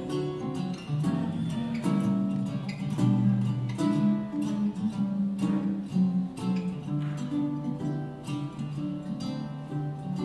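Instrumental break in a swing tune: archtop jazz guitar and baritone ukulele playing together, strummed chords and plucked single-note lines.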